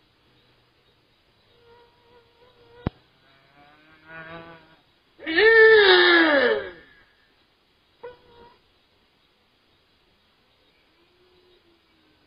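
A single long cry that rises then falls in pitch, a little over five seconds in, with a fainter, shorter cry just before it. There is a sharp click near three seconds and a brief sound near eight seconds.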